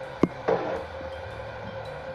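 A single sharp click about a quarter second in, then a brief second sound, over a faint steady hum.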